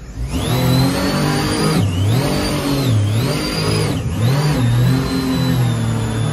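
Supercharged mini jet boat engine revved hard, with a high supercharger whine rising and falling along with the revs. The revs climb and drop back about three times, then hold high.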